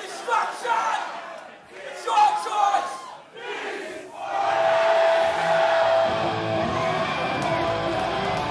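Shouting voices over the first half, then about four seconds in the loud electric guitar of a punk band comes in with a long held note, and bass joins it near the end.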